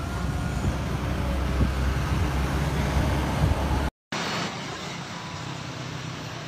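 Low, steady rumble of a distant jet airliner's engines as it climbs away after takeoff. The sound breaks off about four seconds in and carries on quieter, with the distant hum of a jet airliner on the runway.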